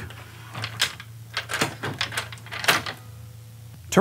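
A few irregular sharp clicks and knocks from the lock hardware of a PGT Commercial 3550 storefront entry door being thrown and tested, its bolt going into the hole freshly drilled in the floor.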